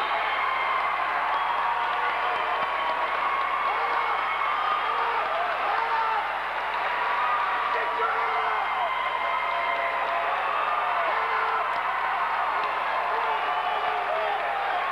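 Crowd of wrestling spectators shouting and talking over one another, a steady din of many overlapping voices with no single speaker standing out.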